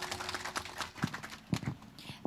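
Scattered hand clapping from a seated audience as a speech ends, thinning out after about a second, with a few louder claps near the middle.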